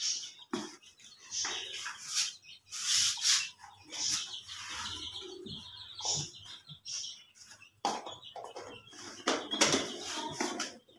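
Birds chirping on and off in short high calls, mixed with rustling and light knocks of a plastic jar and a plastic sheet being handled.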